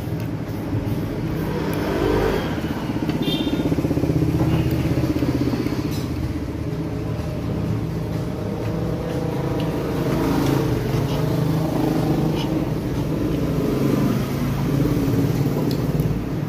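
Motor vehicle traffic, mainly motorcycle engines, running steadily with a rev that rises about two seconds in. Light clinks of a spoon and fork on a plate come through now and then.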